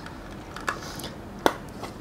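Empty plastic watercolour box being handled and opened, giving two sharp plastic clicks, the louder about three-quarters through, over a low hiss.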